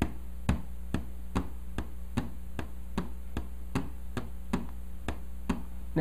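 Steady, even ticking, about two and a half sharp ticks a second, over a low electrical hum.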